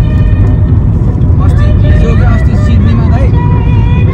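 Heavy, steady low rumble of road and wind noise from a car moving at highway speed. A voice is heard over it in the middle.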